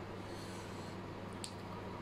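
A quiet eating moment over a low steady hum: a faint sniff through the nose about half a second in, then a single light click of wooden chopsticks against the plate about one and a half seconds in.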